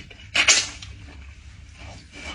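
Hands pulling apart a large piece of roasted meat on a cutting board. A short, loud, noisy tearing burst comes about half a second in, then quieter rustling and handling.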